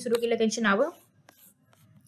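A woman speaking for about the first second, then near silence with a few faint ticks.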